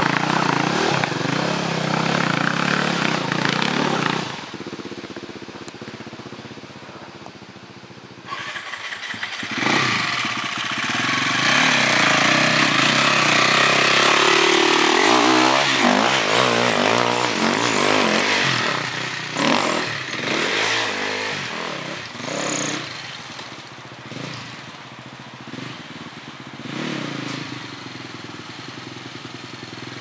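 Off-road dirt bike engines on a trail. One bike runs loudly and pulls away over the first four seconds. A second bike then approaches, revs up and down as it passes close around twelve to sixteen seconds in, and fades as it rides off up the trail.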